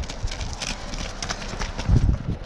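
Running shoes striking the pavement as runners pass close by, several footfalls a second, with a loud low thump near the end.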